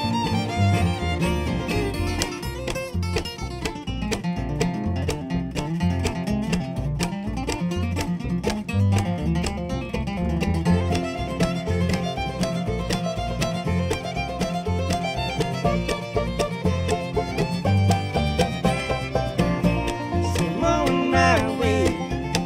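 Bluegrass string band playing an instrumental break without vocals: bowed fiddle over acoustic guitar, mandolin, banjo and a steady upright bass pulse.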